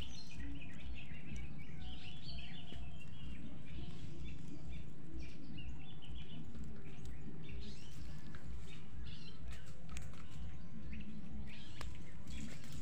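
Small birds chirping on and off over a steady low rumble, with a few faint clicks.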